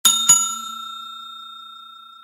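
A bell chime sound effect struck twice in quick succession, then ringing with a clear tone that slowly fades. It is the notification-bell ding of a subscribe animation.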